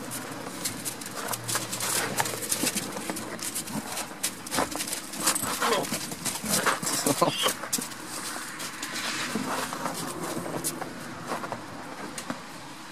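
Goats' hooves scuffing and clicking on snow-covered, frozen ground as the goats forage, a dense, uneven run of crunches and clicks.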